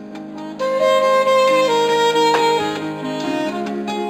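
Live instrumental band music: a keyboard holds soft chords, then a saxophone comes in about half a second in, playing a slow melody of long held notes over them.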